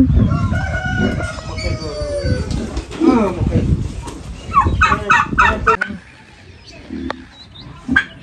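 Rooster crowing in one long call, followed by more loud fowl calls about five seconds in.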